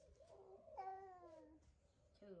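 Faint cry of a baby monkey: a soft call, then about a second in a longer drawn-out call that falls steadily in pitch.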